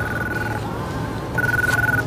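Electronic telephone-style ringing tone: two short rings, one at the start and one near the end, over a steady low background hum.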